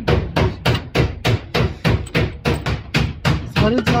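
A series of sharp knocks, evenly spaced at about three a second, over a steady low hum.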